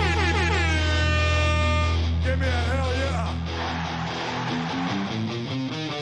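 Punk-rock song playing: electric guitar notes that slide and bend with vibrato over a held low bass note, then a quicker run of notes in the second half.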